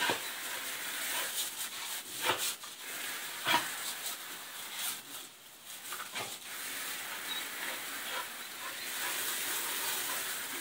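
Garden hose spray nozzle hissing steadily as its jet of water hits a hanging mat and plastic pallet, with a dog yelping briefly a few times as it snaps at the spray, the clearest about two and three and a half seconds in.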